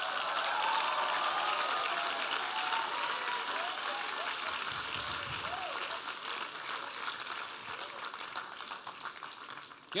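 Large audience laughing and applauding, the laughter strongest in the first few seconds and the clapping slowly dying away toward the end.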